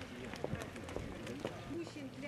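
Footsteps of a group of people walking, short irregular scuffs and taps, with indistinct talk among them.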